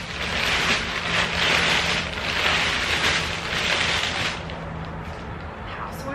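Black plastic garbage bag rustling and crinkling in uneven surges as it is pulled open and handled, dying down about four seconds in.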